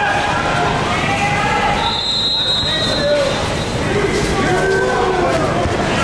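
Indoor gym hubbub of players and spectators talking and calling out, with a basketball bouncing. About two seconds in, a referee's whistle blows one steady, high blast lasting just over a second.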